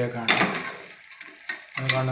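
Steel spoon scraping and stirring mutton in an aluminium pressure cooker: a rough scraping noise that fades out about a second in, followed by a few faint ticks.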